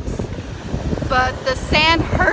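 A woman talking close to the microphone, starting about a second in, over a constant rumble of wind buffeting the microphone.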